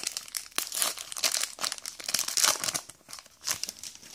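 Foil booster-pack wrapper of a Pokémon trading card game pack crinkling and tearing as it is pulled open and the cards slid out: a dense run of rapid crackles that thins out about three seconds in.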